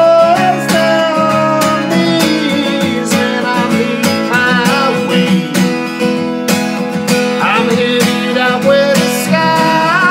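Acoustic guitar strummed in a steady rhythm, with a man's voice singing over it in places.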